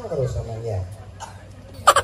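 A performer's voice making a wordless vocal sound that falls in pitch, then a sudden loud shout near the end.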